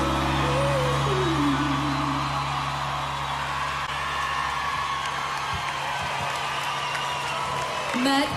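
A live band's final held chord, with a last sung note gliding down, ringing out and stopping about five and a half seconds in, while a festival crowd cheers, whoops and applauds.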